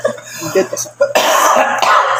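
A man coughing into a tissue: one rough, noisy burst lasting about a second, in the second half.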